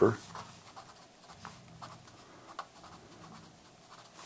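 A pen writing on paper, printing letters in short, faint scratchy strokes with small ticks.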